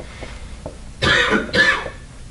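A person coughing twice, two short rough bursts close together about a second in.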